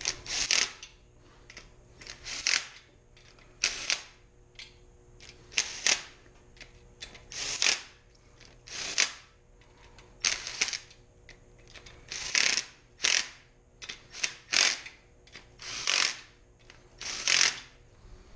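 Cordless impact driver hammering in short bursts, about one every second and a half, with brief clicks between, as it loosens bolts during an engine teardown.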